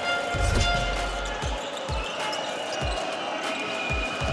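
A basketball being dribbled on a hardwood court: a run of short low thumps at an uneven pace, with music carrying sustained tones underneath.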